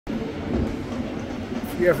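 Steady outdoor stadium ambience: a low rumble with faint background chatter. A man starts speaking near the end.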